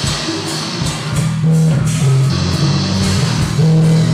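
Rock music with electric guitar and bass holding long, low, loud notes that shift every half second or so, with a few drum strikes in the first second.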